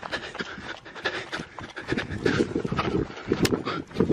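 Rapid, heavy panting breaths, mixed with irregular rustling and bumping.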